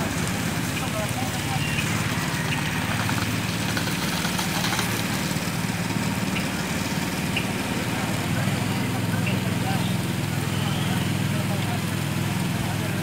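An engine idling steadily, a low even hum, with faint voices in the background.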